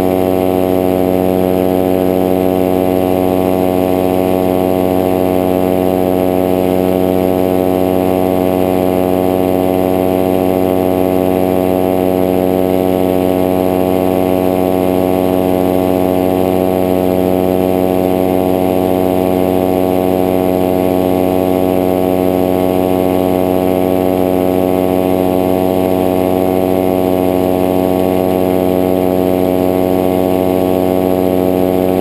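Powered paraglider trike's engine and propeller running steadily in flight: a loud, even drone at one unchanging pitch.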